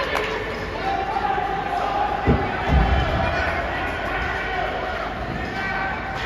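Ice hockey play in a rink, with voices echoing in the arena and two dull thuds a little before halfway through.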